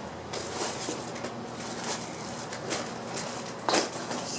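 Paper greeting cards and envelopes rustling and shuffling as they are flipped through and pulled from a box, with a louder rustle near the end.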